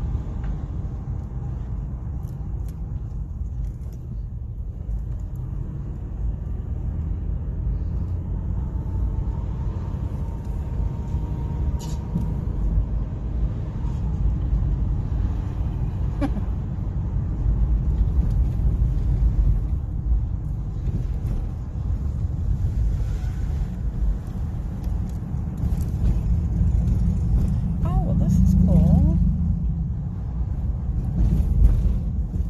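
Steady low rumble of road and engine noise heard inside a moving car's cabin, with a couple of faint clicks partway through.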